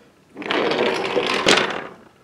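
Wooden toy engine's wheels rolling along wooden railway track, a steady rumble that starts about half a second in, with one sharp click near the end.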